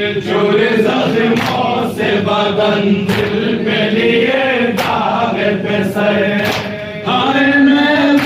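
A group of men chanting a noha, a mourning lament, in unison, with sharp slaps of hands beating on chests (matam) now and then. The voices dip briefly a little before seven seconds in, then come back louder.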